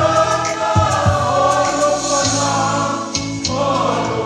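A choir singing a hymn in many voices, over steady low accompanying notes.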